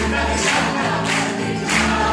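Stage cast singing a chorus together over a band accompaniment with a steady beat, as the finale song of a musical comedy.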